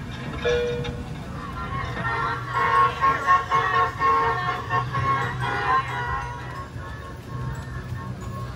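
Background music with a steady melody, fuller and louder in the middle few seconds.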